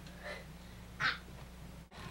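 A person's voice calls out the name "Maxim!" in one short, raspy, breathy burst about a second in, over a steady low hum. The sound drops out for an instant near the end.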